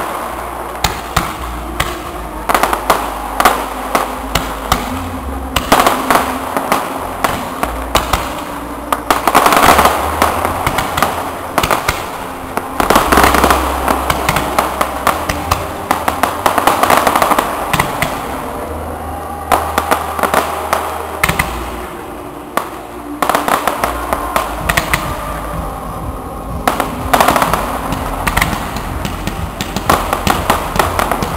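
Aerial fireworks bursting in quick succession: a near-continuous run of sharp bangs and crackling that comes in dense waves, swelling and easing off several times.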